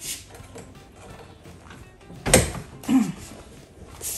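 The metal reclining and glider mechanism of a nursing chair being worked, with one loud clunk a little past halfway and a short creak just after it.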